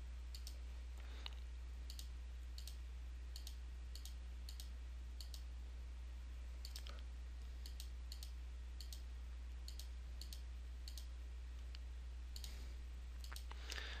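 Faint, quick clicks, a couple a second, as keys are pressed one after another on an on-screen TI-84 Plus calculator emulator, over a steady low hum.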